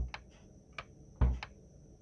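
Trap percussion loop playing dry with the TrapDrive distortion bypassed: a few sparse, short ticks and clicks, with one deeper, louder hit a little past the middle.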